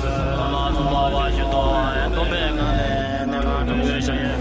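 Several chanting voices layered over one another on a steady low drone, used as soundtrack music.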